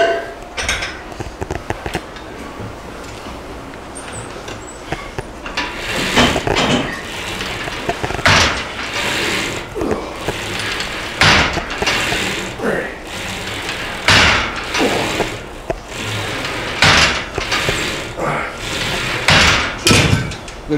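Cable machine weight stack rising and falling on its guide rods during repeated low cable deadlift pulls, the plates clanking with each rep. About one knock every two to three seconds, starting about six seconds in, with metallic rattling between them.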